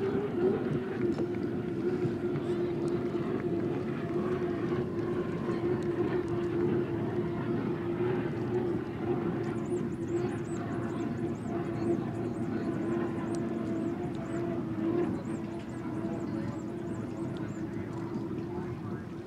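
Unlimited hydroplanes running at racing speed across the water: a steady engine drone at one constant pitch over a rush of noise.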